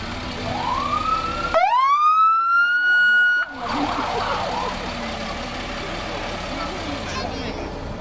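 Fire truck siren sounding a short blast: a first softer rising wail, then a loud wail that sweeps up, holds one steady pitch for about two seconds and cuts off suddenly.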